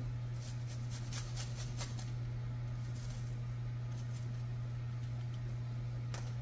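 Garlic rasped on a flat metal hand grater: a few faint scraping strokes in the first two seconds, then only scattered ones. A steady low hum runs underneath throughout.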